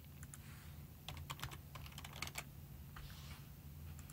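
Faint typing on a computer keyboard: a scattered run of light key clicks over a low steady hum.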